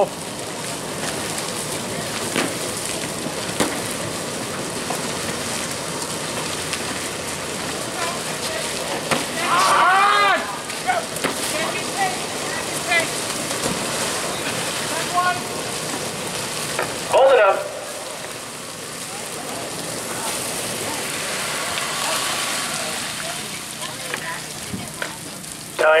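Fire hose stream spraying water, a steady rushing hiss that runs through the run, with brief shouts about ten seconds in and again at about seventeen seconds.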